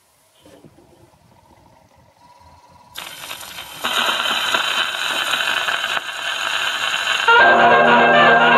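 Portable gramophone playing a 78 rpm shellac record of a 1920s dance-band fox-trot. Faint crackle at first, then loud surface hiss and crackle come in suddenly about three seconds in. The band's brass introduction starts about a second later and gets louder near the end.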